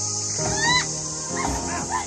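Background music, with short high pitch glides that rise and fall, repeated several times about half a second apart.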